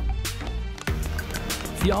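Background music with a steady beat; a narrator's voice comes in at the very end.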